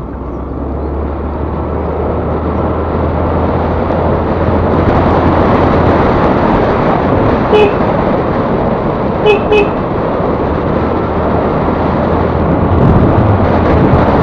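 Wind and road noise from a Yamaha Ray ZR scooter pulling away and gathering speed, growing louder over the first few seconds over a low steady engine drone. A horn gives one short beep about eight seconds in and two more quick beeps about a second and a half later.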